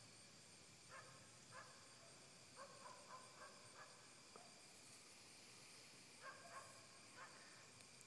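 Near silence: faint outdoor ambience with a steady high-pitched hum, and a few faint short calls scattered through.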